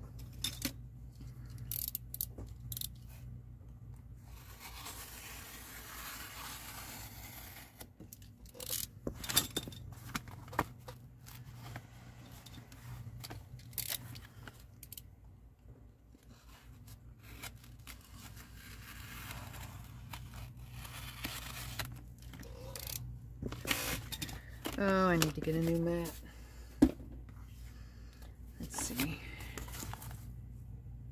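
Heavy brown paper packaging being handled and cut along a ruler on a cutting mat: rustling and scraping, with scattered clicks and knocks of the ruler and tools. Near the end, a short wordless hum with a wavering pitch, then one sharp tap.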